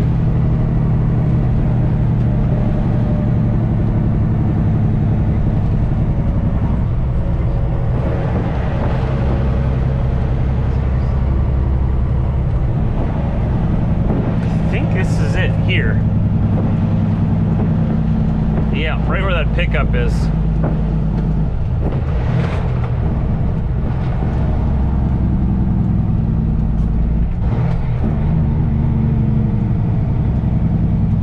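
Heavy truck's Caterpillar C15 diesel engine running steadily under a heavy load, heard from inside the cab on the highway. The engine note dips and changes pitch a few times.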